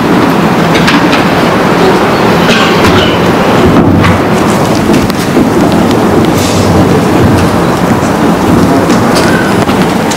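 Loud, steady rumbling noise with a few scattered clicks.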